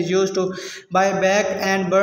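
A man's voice chanting in long held tones, broken once by a short pause a little under a second in.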